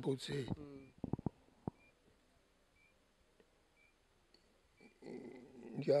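A man's voice speaking in Kinyarwanda breaks off, followed by a few soft clicks and a pause of about three seconds. Speech resumes near the end.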